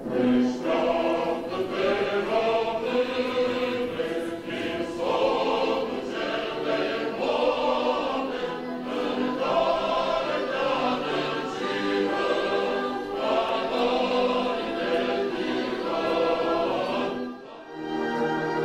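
A national anthem sung by a choir with orchestral accompaniment, in slow sustained phrases. It breaks off shortly before the end and different music begins.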